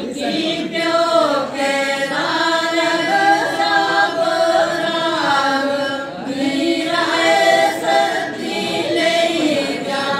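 A group of women folk singers singing together without instruments, in long drawn-out phrases with gliding notes and short breaks between phrases.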